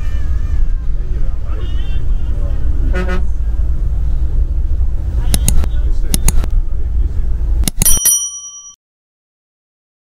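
Bus engine and road noise heard from inside the cabin as a steady low rumble. About five seconds in come several mouse-click sound effects, then a bell-like ding that rings on briefly near the eighth second, and the sound stops.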